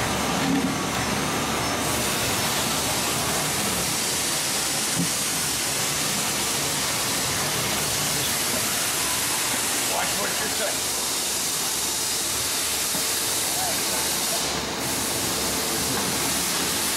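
Steady hiss of machinery running as a Vincent screw press turns slowly, its screw and rotating discharge cone driven at 6 hertz through a VFD while pressing citrus pulp. The noise holds even throughout, dipping briefly near the end.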